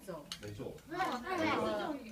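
Speech, loudest in the second half, with two short clicks near the start.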